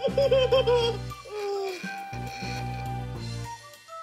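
Baby Alive Real as Can Be doll's electronic baby voice cooing and babbling with a wavering pitch for about the first second, then a single falling coo. Steady background music plays underneath.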